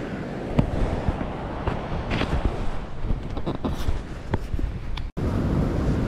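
Wind noise on the microphone over beach surf, with a few light knocks and clicks. The sound drops out abruptly for an instant about five seconds in.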